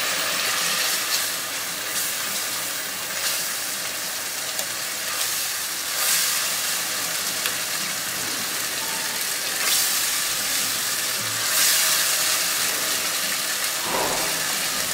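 Tomato and spice masala sizzling as it fries in hot oil in a nonstick pot, a steady hiss with a few louder swells. A silicone spatula stirs it through the later part.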